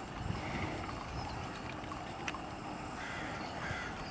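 Outdoor ambience: a steady low rumble of wind on the microphone, with a few faint bird calls and a single small click about halfway through.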